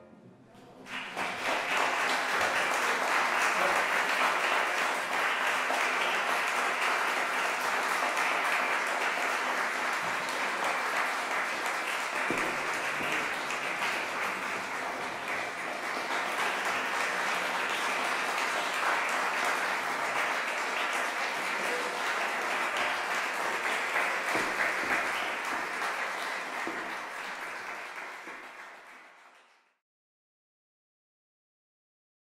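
Audience applauding, starting about a second in, holding steady and fading out near the end.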